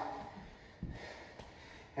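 Quiet room tone with a soft thud a little before one second in, from a bare foot stepping onto a hardwood floor during a lunge.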